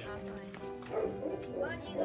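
Background music with steady held notes, and a Great Pyrenees giving short barks from about a second in.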